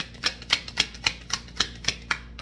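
A deck of reading cards being shuffled by hand, the cards clicking against each other in a steady rhythm of about four sharp clicks a second.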